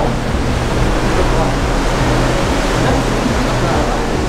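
Steady rushing noise on the open deck of a moving car ferry, the sea and wind going past, over a low steady hum from the ship's engines.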